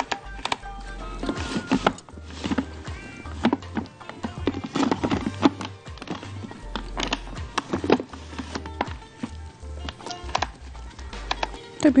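Background music with percussion and a bass line. No motor is heard running.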